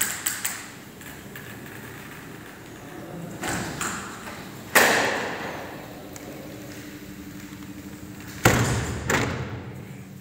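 uPVC sliding door sashes being slid along their track. There are a few knocks, a sharp one about five seconds in, and a heavier thud near the end as a sash shuts against the frame.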